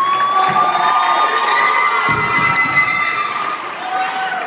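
Crowd of students cheering and screaming at the end of a dance, several high-pitched voices held together for about three and a half seconds before thinning out near the end.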